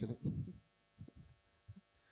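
A man's low voice trails off and falls in pitch over the first half second, leaving a pause. In the pause there are a few faint, short, low thumps about a second in and again shortly before the end.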